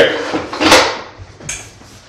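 A towel swished across wet ceramic floor tile under a foot, mopping up standing water from the grout lines: one short swish about two-thirds of a second in, then quieter rubbing.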